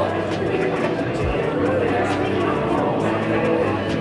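Background music with held notes, with indistinct voices mixed in.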